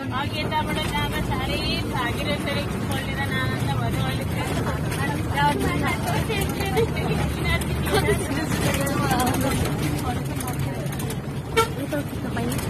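Passengers talking and laughing inside a moving bus, over the steady low rumble of its engine and road noise.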